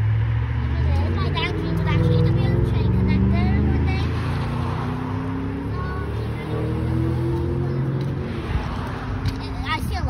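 A motor vehicle passing close by: a loud, low rumble of engine and tyres whose engine note falls slowly in pitch, loudest about two to three seconds in and fading towards the end.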